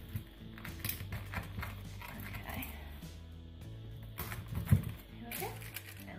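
Large kitchen knife pressed down through a slab of still slightly warm caramel and mixed-nut praline onto a wooden chopping board: irregular crunches and knocks, the sharpest one a little before the end. Background music plays throughout.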